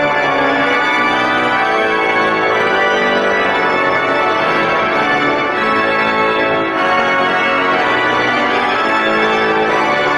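Organ playing full, sustained chords that change every second or so.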